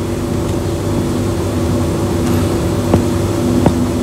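Steady background hum with several held tones, and two faint clicks about three seconds in.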